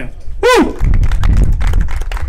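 Audience applauding, with one short whoop from the crowd about half a second in.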